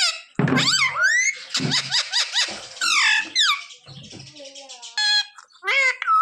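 Rose-ringed parakeet (Indian ringneck) chattering in a run of high-pitched, speech-like calls that glide up and down, with short pauses between them.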